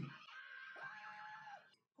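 Faint audio of the anime episode playing under the reaction: a low-level haze with one held, even tone lasting under a second near the middle.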